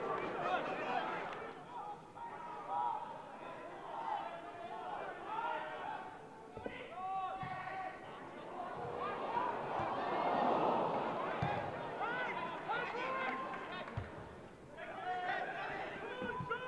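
Players shouting and calling to each other on a football pitch, with a few dull thuds of the ball being kicked. A brief swell of crowd noise comes about ten seconds in.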